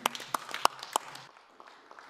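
Brief scattered applause: a handful of sharp, irregular hand claps that stop about a second and a quarter in.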